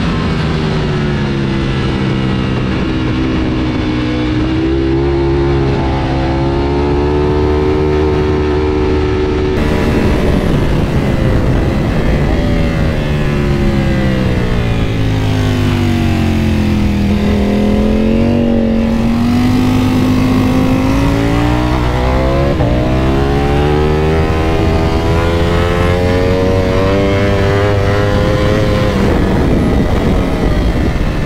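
Ducati Panigale V4's V4 engine heard onboard at track speed in a high gear, with steady wind rush. The engine note holds steady at first. It drops for several seconds around the middle, then climbs again as the bike accelerates.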